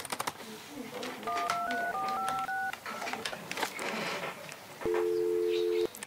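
Telephone keypad dialling: six short touch-tone beeps in quick succession, each a pair of pitches, stepping upward in two runs of three. About a second before the end a steady two-note line tone sounds for about a second and then cuts off.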